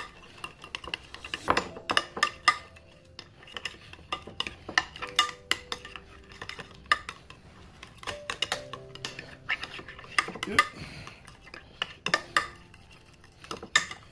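A metal spoon stirring a thick mayonnaise-based crab stuffing in a glass dish, with irregular clinks and scrapes of the spoon against the glass.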